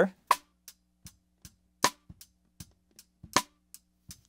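Snare drum cross-stick rim clicks from the top and bottom snare mics played together, still dry before any mix EQ: a sharp click about every second and a half with fainter ticks between.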